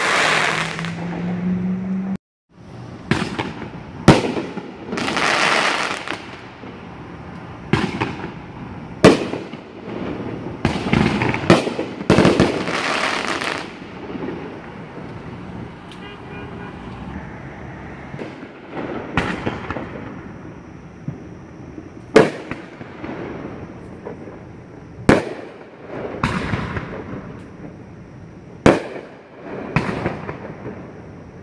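Aerial fireworks display: a string of sharp bangs from bursting shells, a few seconds apart, with longer crackling stretches between them.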